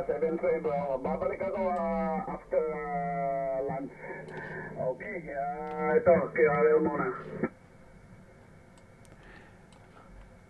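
Single-sideband voice from another ham operator on the 40-meter band (7.178 MHz, lower sideband), received by the radio and streamed over the network to play through loudspeakers. It sounds narrow and telephone-like, with nothing above the sideband's pass band. The voice stops about seven and a half seconds in, leaving faint receiver hiss.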